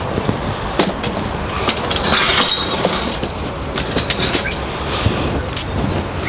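Metal-framed folding camp chair being turned and shifted on brick paving, with a few sharp knocks and a scraping stretch about two seconds in, over a steady low rumble.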